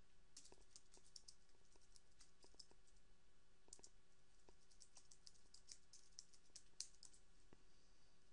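Faint typing on a computer keyboard: two runs of quick, irregular key clicks with a short pause about three and a half seconds in.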